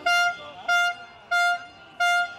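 A horn sounding in short, evenly spaced blasts of one steady pitch, about three in two seconds, repeating as a rhythm.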